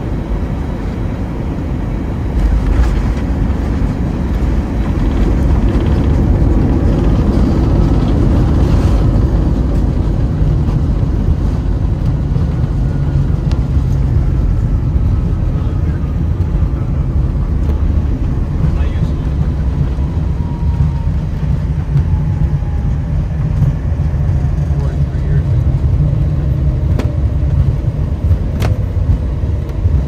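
Airbus A321 cabin noise on the landing rollout: a loud, steady rush and rumble of jet engine and runway noise that swells about two seconds in, with a faint whine slowly falling in pitch through the middle.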